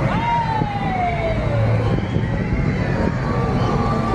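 A siren tone winding down in pitch over about two seconds, then a steadier siren note near the end. Under it runs the low, steady running of a tractor engine towing a float, with crowd noise.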